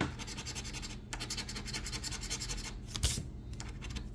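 A coin scratching the coating off a scratch-off lottery ticket in rapid back-and-forth strokes. There is a short break about a second in and one louder stroke near three seconds.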